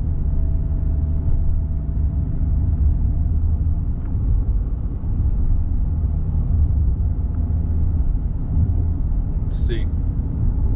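Steady low rumble inside the cabin of a Dodge Charger SRT Hellcat Redeye being driven, its supercharged 6.2-litre V8 running under light load along with road noise. A short high-pitched sound comes near the end.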